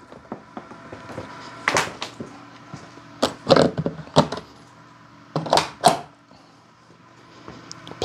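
Several sharp knocks and clicks in the first six seconds as a charging handle and its cable are handled and plugged into a Chevy Bolt EV's J1772 charge port. The handle is a Tesla Universal Wall Connector's, with its Magic Dock adapter fitted.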